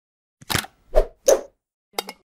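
Three short pop sound effects in quick succession, starting about half a second in, as part of a logo animation.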